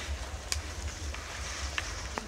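Low wind rumble on the microphone, with a few faint clicks from hands handling plants as a leaf is picked.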